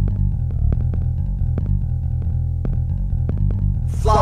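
Synthesizer music: a deep, steady bass line with short percussive clicks ticking over it.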